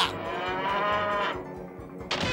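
A cartoon cow mooing: one long, drawn-out moo that rises slightly in pitch and then falls away, dying out after about a second and a half.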